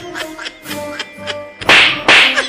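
Light background music with short plucked notes, then near the end a loud, short whip-crack or whack sound effect.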